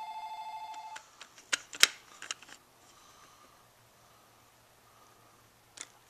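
A phone ringing: one electronic, rapidly trilling ring lasting about a second, signalling an incoming call. A few sharp clicks and knocks follow.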